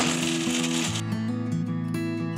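Guitar background music, with a mixer grinder running for about the first second and then stopping, pulsing coconut pieces, green chillies, ginger and garlic to a coarse grind in a steel jar.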